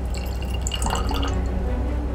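Hydrogen peroxide poured from a small glass beaker into a glass Erlenmeyer flask, the thin stream trickling and splashing into the liquid already at the bottom, over a steady low hum.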